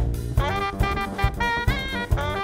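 Jazz with a tenor saxophone melody over a drum kit playing a steady beat, about two and a half strokes a second.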